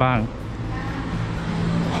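A man's voice finishes a word at the start, then a steady rumble of outdoor background noise with a low hum, with no distinct event.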